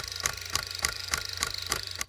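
Film projector sound effect: evenly spaced mechanical clicks, about three or four a second, over a steady low hum.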